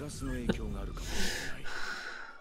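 A man's breathy laughter and gasps, with a short click about half a second in.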